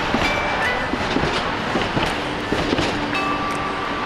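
MBTA Green Line light-rail trolley passing close by, a steady rumble broken by many short clicks and knocks from its wheels on the track.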